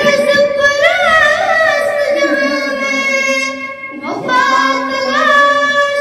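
A girl singing a nazm solo, close into a handheld microphone, in long drawn-out notes: one phrase, a short break for breath about four seconds in, then the next phrase.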